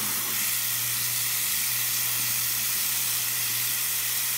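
Water tap running steadily into a sink, a continuous even hiss, with a steady low hum underneath.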